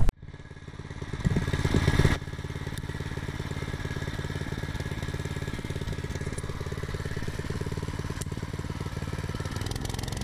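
Small gasoline engine of a gravel plate compactor running. It is louder for the first two seconds, then drops suddenly to a steady idle.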